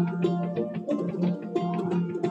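Recorded vihuela music: a plucked-string piece, with notes picked a few times a second over a low, ringing bass note.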